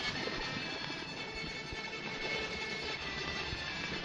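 Surface noise of a 1960 shellac 78 rpm record: a steady hiss with scattered crackle clicks, and faint held tones under it as the record begins.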